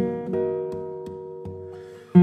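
Solo classical guitar, a Daniel Friederich instrument, played fingerstyle. Notes plucked in the first half-second are left ringing and slowly fade, with a few soft single notes over them.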